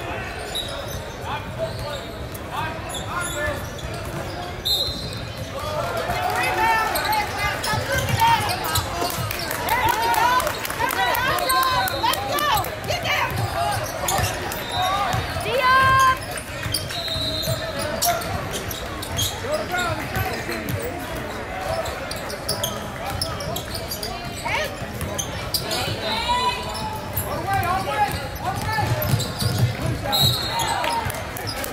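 Basketball bouncing on a hardwood gym floor during live play, repeated impacts echoing in the large hall, with unintelligible voices of players and spectators.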